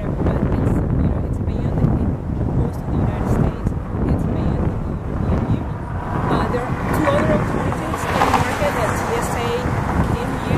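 A woman speaking into a reporter's microphone, with wind buffeting the microphone throughout. Her voice grows louder and higher-pitched in the last few seconds.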